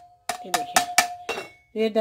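A steel bowl knocked quickly and repeatedly against the rim of a metal pot to shake the last grated carrot into the milk. It makes a quick run of clinks, about five a second, over a steady metallic ring.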